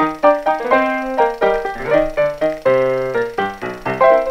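Background music: a melody of quick struck notes, each fading before the next, about four a second.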